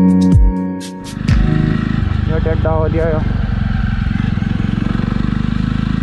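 Electronic music with deep bass drops for about the first second, then a Jawa motorcycle's single-cylinder engine running steadily under way, with a fast even pulse.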